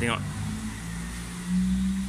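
Low steady engine hum, with a droning tone that grows louder about one and a half seconds in.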